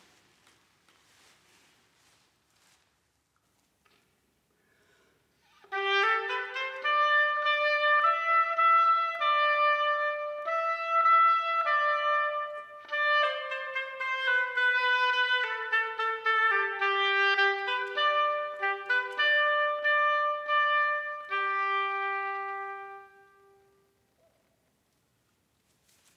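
Solo oboe playing a slow melody. It begins about six seconds in after a near-silent pause, and ends on a long held note.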